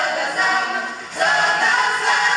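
A group of women singing a traditional folk song in unaccompanied harmony, the voices breaking off briefly for a breath about a second in and then coming back in.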